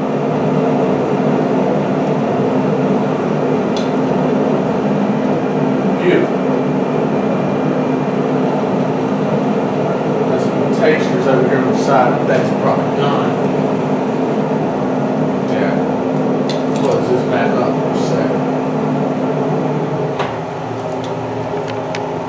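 Shrimp sizzling on a hot salt block in a Traeger pellet grill, over the grill's steady motor hum, with scattered clicks and pops.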